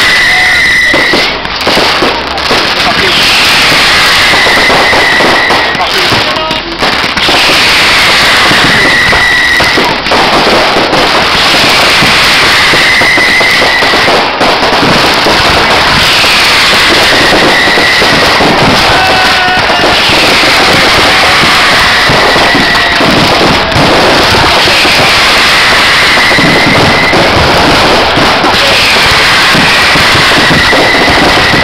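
Dense fireworks barrage: many shells and fountains going off at once in a continuous loud crackling and banging, with no let-up. About every four seconds a falling whistle-like tone levels off and holds briefly.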